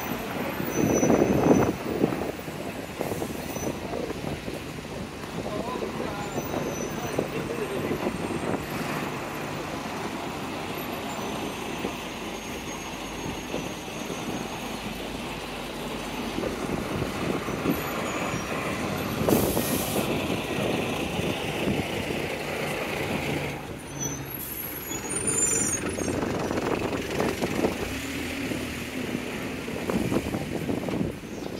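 Busy street traffic: engines and tyres of cars and a double-decker bus passing close by, with a short sharp hiss of air brakes about twenty seconds in and passers-by talking.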